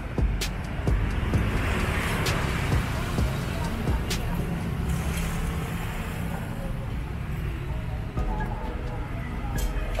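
Busy street sound: a steady rumble of traffic with a vehicle going by about two seconds in, and scattered short clicks and knocks. Music and faint voices sound along with it.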